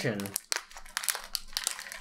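A shiny plastic packaging bag crinkling and crackling in the hands as it is handled, in quick irregular crackles.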